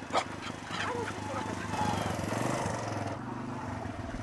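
Dogs barking and yipping in greeting as a small motorcycle rides up, its engine running steadily underneath; the loudest sound is a short, sharp bark just after the start.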